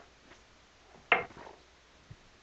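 A single sharp knock about a second in: a small wooden board knocked against the table saw's top as it is set in place by hand.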